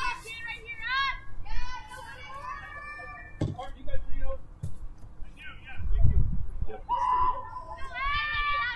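High-pitched voices of softball players calling out and cheering across the field in drawn-out, sing-song shouts, with a sharp knock about three and a half seconds in and a brief low rumble a little after the middle.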